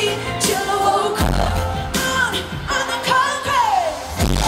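Live pop song through a concert PA with a woman's lead vocal over heavy bass, recorded right beside the speakers so the sound is distorted. Near the end a sung note slides down.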